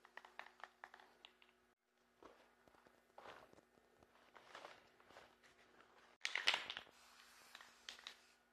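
Faint rustling and crinkling of crumpled newspaper being pressed onto wet spray paint, after some faint clicks. About six seconds in comes one short, louder burst of hiss.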